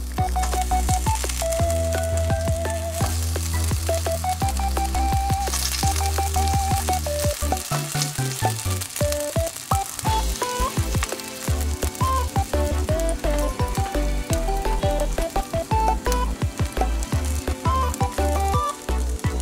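Shrimp sizzling in hot oil in a frying pan as more are laid in, a steady crackling hiss that is loudest a few seconds in. Background music with a pulsing bass line plays over it.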